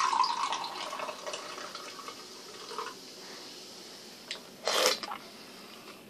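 Carbonated energy drink poured from a can into a glass, the liquid splashing and trickling, loudest at first and fading away over about three seconds. A brief, louder noise follows about five seconds in.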